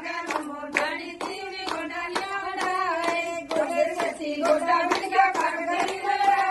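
A group of women singing a song together while clapping their hands in a steady rhythm, about two claps a second.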